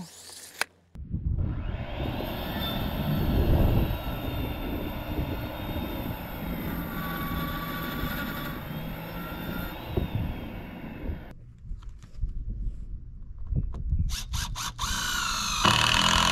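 Circular saw running and cutting through a wooden board for about ten seconds, then stopping. A few knocks and handling sounds follow.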